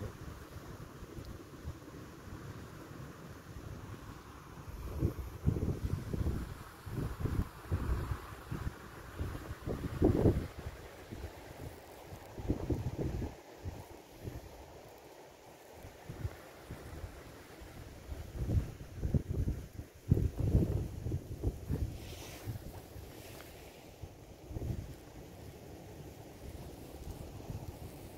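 Wind buffeting the microphone in irregular gusts, a low rumble that swells and drops away many times over a faint steady hiss.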